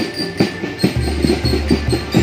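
Rhythmic drumbeats of a parade band knocking a few times a second. A pickup truck's low engine hum joins in about halfway through as the truck passes close by.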